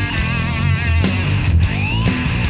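Rock band playing an instrumental passage: a lead guitar holds notes with wide vibrato, then bends upward near the end, over bass and drums.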